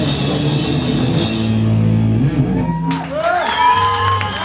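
Live punk rock band playing loudly: distorted guitar, bass and drums with crashing cymbals. The drums and cymbals stop about a second and a half in as the song ends, leaving a low note ringing, and gliding whines come in near the end.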